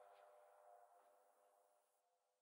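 Near silence: a faint, steady musical drone fading out to nothing.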